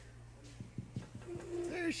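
A steady low hum with a few soft taps. Near the end a person's voice holds a drawn-out, wavering vocal sound that runs into speech.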